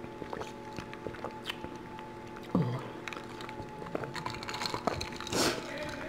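Background noise of a TV showing a football game, with a voice briefly raised about halfway through, over a steady hum of several held tones and a few soft clicks.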